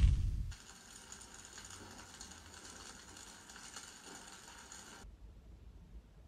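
Logo-intro sound effect: the tail of a loud whoosh dies away in the first half second, then a faint crackling goes on for about four and a half seconds and cuts off suddenly, leaving faint room tone.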